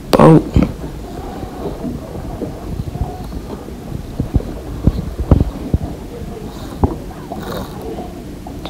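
Low wind rumble and scattered knocks from handling of the camera and fishing rod while a fish is being reeled in, after one short spoken word right at the start.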